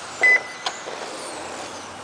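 A single short electronic beep at one steady pitch, about a quarter second in, typical of a lap-counting timing system registering a car crossing the line. It is followed by a faint click, over steady background noise.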